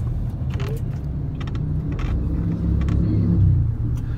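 Low engine and road rumble of a bus, heard from inside while it drives through city streets; it swells louder about three seconds in, then eases off.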